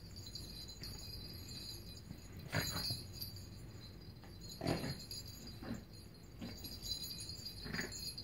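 Plastic clamshell treat-puzzle toy knocking and rattling as a dog's nose pushes it across carpet, in a few separate knocks, the loudest about two and a half and four and a half seconds in.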